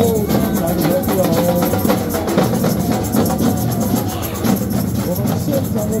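Samba drum troupe playing a fast, driving rhythm of densely repeated drum strikes, with the crowd's voices singing and shouting along.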